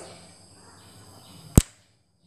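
A single sharp click about one and a half seconds in, over faint room noise, and then the sound cuts off to silence.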